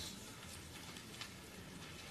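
Quiet room tone of a council chamber: a faint steady hiss with a couple of soft clicks, one near the start and one a little past the middle.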